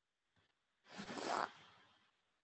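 A short rustling, scraping noise about a second in, lasting about half a second and then fading.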